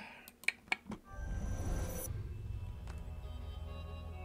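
A few sharp clicks, then a record label's logo intro sting from a music video: a noisy swell over a deep, steady drone. The swell's hiss cuts off about two seconds in, and low sustained tones carry on.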